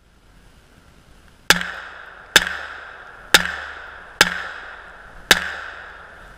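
Five gunshots from a .40 caliber handgun, roughly a second apart, each trailing off in a short echo.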